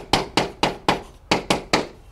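Chalk striking a chalkboard while an equation is written: a run of sharp, short taps, about four a second.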